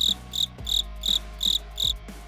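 A cricket chirping in a steady rhythm, short high-pitched chirps about three times a second, over soft background music.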